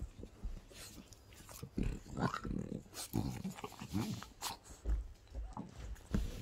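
French Bulldog growling in a play fight with a hand, a quick run of short growls starting about a second and a half in, mixed with rustling of the fleece blanket.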